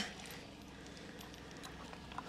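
Quiet outdoor background with a few faint, soft clicks.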